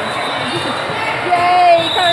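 The din of a large indoor volleyball hall: players' and spectators' voices calling and chattering, with balls bouncing on the hard court floor. A high steady tone sets in near the end.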